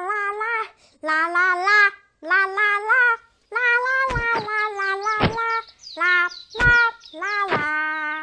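A child's voice singing a wordless, wavering tune in short phrases, each about a second long. In the second half a few sharp knocks come through it, and so do faint, short, high chirps.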